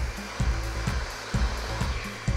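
Handheld hair dryer running steadily, blowing on long hair, over background music with a pulsing bass beat.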